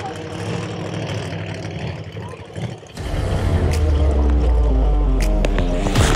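Engines running steadily at a racetrack for about three seconds, then background music with a heavy bass line and a regular drum beat cuts in and takes over.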